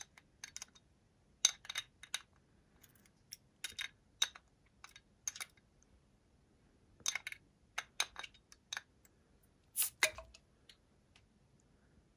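A glass beer bottle handled close to a microphone: scattered sharp clicks and light taps on the glass at irregular intervals, with a louder, briefly ringing click about ten seconds in.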